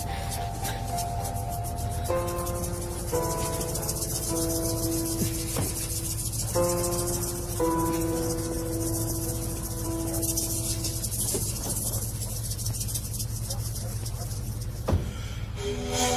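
Background music score: slow, sustained melodic notes that change every second or two, over a steady low hum, with a single sharp click near the end.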